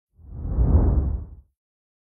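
A low whoosh sound effect that swells up and fades away over about a second and a half.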